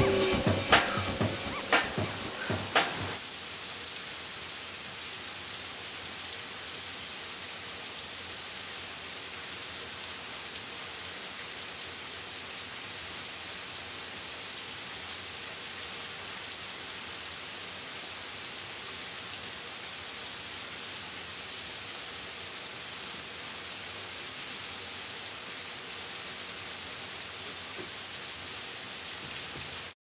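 The last beats of a song fade out about three seconds in, leaving a steady, even hiss with no other sounds.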